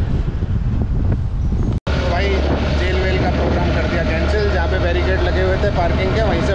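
Wind buffeting the microphone over the low rumble of a moving scooter. Just under two seconds in, the sound drops out for an instant, and then men's voices talk over the steady ride noise.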